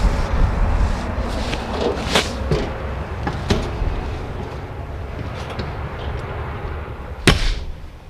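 Knocks and footfalls at the entry door and steps of a fifth-wheel RV as someone climbs inside, with a low rumble on the microphone that fades after the first couple of seconds. A few light knocks come in the middle, and one sharp knock near the end is the loudest.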